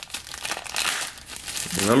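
Black plastic blind bag crinkling and crackling in irregular bursts as hands pull it open to get the toy figure out.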